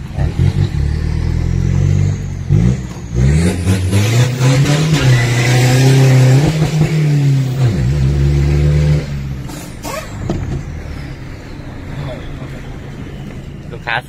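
Turbocharged 1.9-litre diesel pickup engine, fitted with a larger aftermarket turbo, accelerating hard, heard from inside the cab. The revs climb, dip about two and a half seconds in, then climb again and hold high with a loud turbo hiss. About nine seconds in the driver lifts off and a high turbo whistle falls away slowly.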